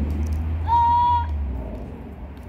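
A child's short, high-pitched call, held at one pitch for about half a second, starting a little over half a second in, over a steady low rumble.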